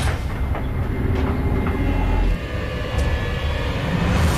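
Train carriage running along the track: a steady low rumble with a few light clicks and knocks.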